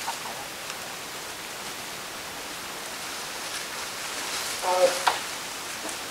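A steady hiss, with one short call from a person's voice about five seconds in.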